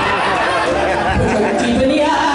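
A voice talking, with crowd chatter behind it.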